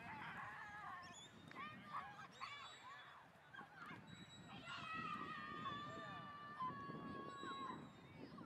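Faint, distant children's shouts and calls: short calls in the first half, then one long call held at a steady pitch for about three seconds.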